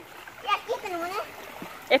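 Steady splashing of water pouring off the end of a water slide into a pool, with a faint voice calling about halfway through.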